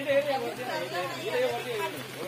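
People's voices talking indistinctly, a mix of chatter with no clear words.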